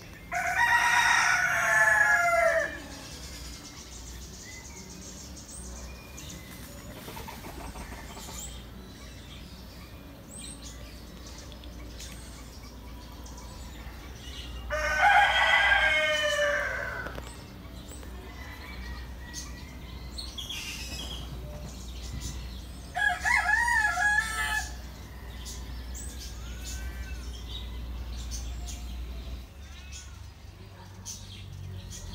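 A rooster crowing: a long crow near the start, another about halfway, and a shorter, wavering call about three-quarters through. Faint small-bird chirps come in between.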